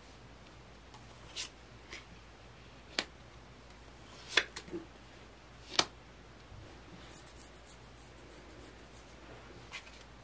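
Tarot cards being drawn from the deck and laid down one at a time on a velvet tablecloth. There are about four sharp card snaps, roughly a second and a half apart, then a faint papery rustle about seven seconds in.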